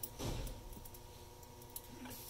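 Faint clicks and light clinking of small metal bicycle parts being handled, a T-clamp and its bolts: a short click at the start, a brief scuffle just after, and another small click near the end.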